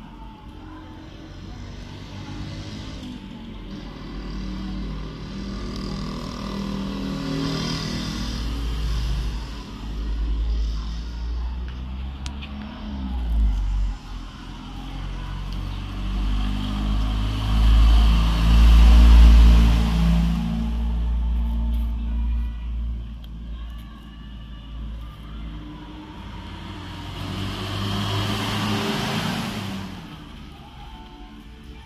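Engines of passing motor vehicles swelling and fading several times, loudest about two-thirds of the way through and swelling again near the end.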